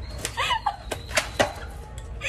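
A short, high, wordless vocal squeal, followed by three sharp clicks or knocks.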